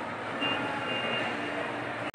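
Steady background noise of a large indoor shopping mall atrium, with a faint high tone heard briefly in the first half.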